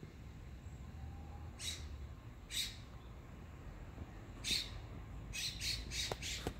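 A bird giving short, harsh calls: about five of them at uneven gaps, over a steady low rumble.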